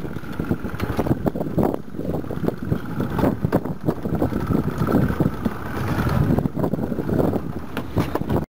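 Wind buffeting the microphone aboard a small open fishing boat, with many short knocks and thumps against the boat as a wahoo is landed and handled at the gunwale.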